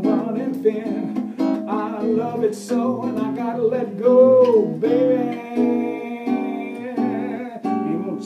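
Solo acoustic guitar strumming a blues accompaniment, with wordless singing that swoops up and down and then holds a long wavering note.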